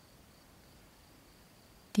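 Near silence: faint room tone with a steady hiss, until a voice begins right at the end.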